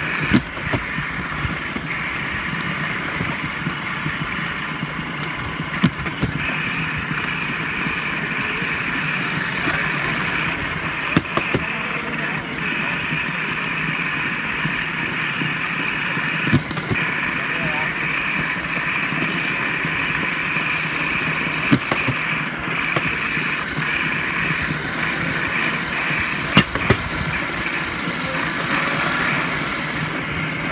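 Steady running noise of a rail vehicle travelling along the track, its motor drone and wheel noise continuous. Sharp knocks come every few seconds, at about one, six, eleven, seventeen, twenty-two and twenty-seven seconds in.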